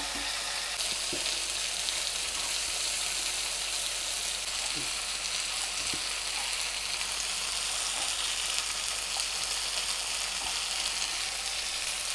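Masala-marinated chicken pieces sizzling steadily in a little oil on a hot black pan, searing until charred in spots, with a few faint clicks.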